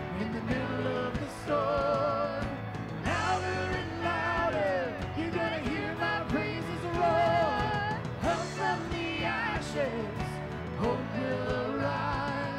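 Live worship song: several singers in harmony with a band of keyboard, guitar and drums.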